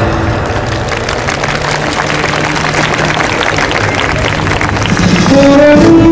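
Audience applauding in a break in the show music, over a faint held low note; the music comes back in with rising pitched notes about five seconds in.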